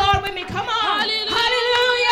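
Live gospel praise singing: a woman's voice holds long notes and bends them up and down without clear words, with a few low thumps underneath.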